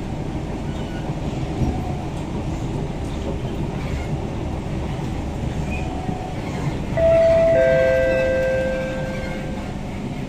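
Steady running rumble of an SMRT C651 train at speed, heard from inside the car. About seven seconds in, a train horn sounds: two steady tones, the second joining a moment after the first, held for about two and a half seconds while slowly fading.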